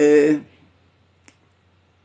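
A man's voice holding one short syllable, then a pause with a single faint click about a second and a quarter in.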